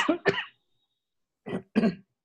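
A person coughing and clearing their throat: a rough burst at the start, then two short coughs close together near the end.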